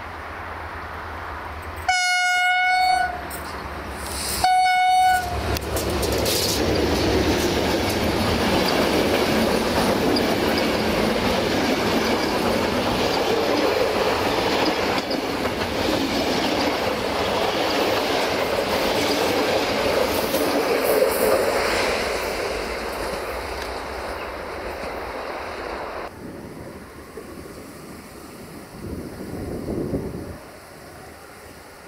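Passenger train's locomotive sounding its horn twice, one long blast and one shorter one, then the train passing with a loud clatter of wheels over the rails that fades away near the end.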